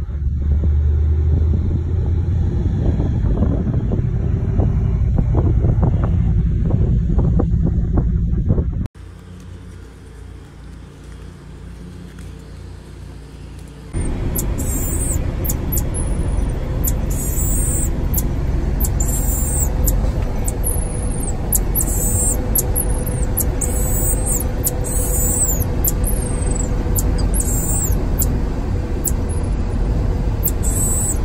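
A loud low rumble for the first third, then, after a break, a marmoset's very high-pitched calls repeated about once a second, some with short falling tails, over the steady low road noise inside a moving vehicle's cab.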